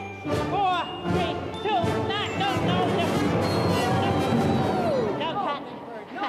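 Full symphony orchestra coming in raggedly after a wrong count-in, a dense, loud jumble that fades out before the end, with a voice over it in the first second.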